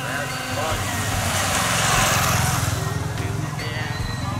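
A small motorcycle engine running as it passes close by, getting louder to a peak about halfway through and then easing off, with voices alongside.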